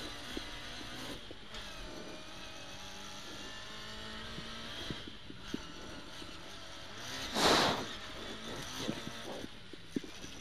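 Ford Escort RS2000 rally car's four-cylinder engine heard from inside the cabin, revs rising and falling through the gears. A brief loud rushing burst comes about seven and a half seconds in.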